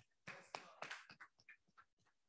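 Faint crackling and tapping of paper being handled close to a microphone. There is a dense cluster of rustles in the first second, then scattered small clicks.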